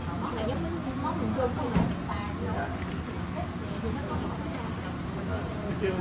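Indistinct conversation around a dinner table, with one short knock a little under two seconds in.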